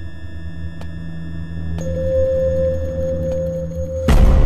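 Suspenseful background score: a low sustained drone under held tones, with a higher held note coming in a little under two seconds in and a few faint ticks.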